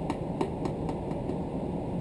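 Dust-extraction ventilation running with a steady rushing hum through its hose hood over a plaster bucket. A few light ticks come from a small plastic cup as plaster powder is shaken out of it into the water.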